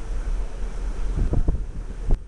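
Wind buffeting the microphone on an open ship's deck: a steady low rumble with a few harder gusts thudding a little after halfway.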